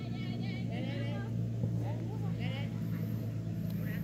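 Players' calls and shouts across a football pitch, over a steady low motor hum.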